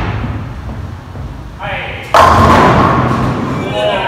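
Bowling ball thudding onto the lane and rolling with a low rumble, then a loud crash of pins about two seconds in, the clatter dying away over the next second or so. A voice calls out briefly just before the crash.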